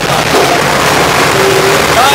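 Torpedo TD55A tractor's diesel engine running loudly and steadily while the tractor drives along.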